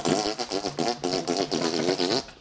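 A man's wordless vocal noise: a drawn-out, wavering groan pulsing several times a second, his mocking reaction of disgust.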